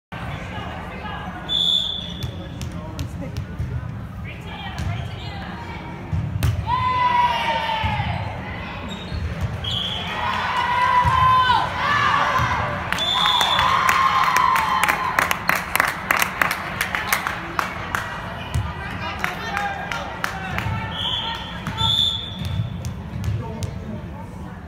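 Volleyball being played in a gym: the ball knocking on the hard floor and being struck, a few short high whistle blasts, and players and spectators calling out, echoing in the hall.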